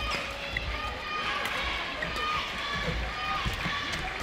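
Badminton doubles rally: rackets strike the shuttlecock with sharp cracks several times, while shoes squeak and patter on the court. Voices murmur in the hall beneath.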